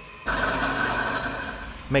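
A steady mechanical hum with a low rumble, cutting in suddenly just after the start and easing off slightly before the narration returns.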